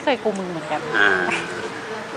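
People talking, with a brief higher-pitched voice-like sound about a second in.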